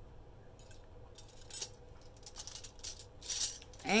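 Metal flatware clinking and jingling as pieces are handled and knock together: a scatter of short, bright clinks that grows busier in the second half.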